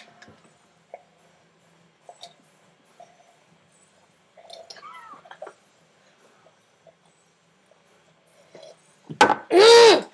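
A boy drinking hot sauce straight down from a glass: mostly quiet, with a few faint clicks and swallows. Near the end comes a loud, high-pitched voice shouting.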